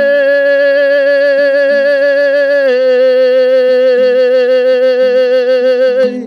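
A male singer holds one long note with a slight vibrato, stepping down a little in pitch about two and a half seconds in, over a softly played Kazakh dombra.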